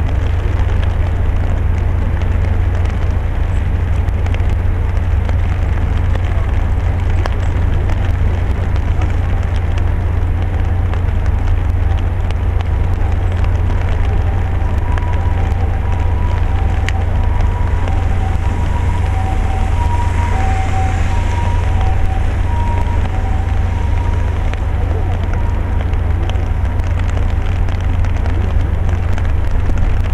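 Steady rain pattering and crackling on an umbrella close to the microphone, over a strong steady low rumble. Midway, a faint tone at two pitches comes and goes in short dashes for several seconds.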